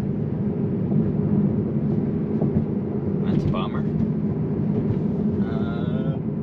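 Steady road and tyre rumble inside a moving Tesla's cabin at road speed, with a short voice-like sound about three and a half seconds in.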